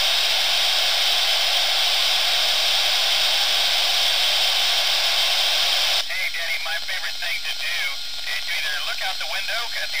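Steady radio receiver hiss on the ISS amateur downlink frequency once the station stops transmitting. It cuts off abruptly about six seconds in, when the downlink comes back with a voice over the radio.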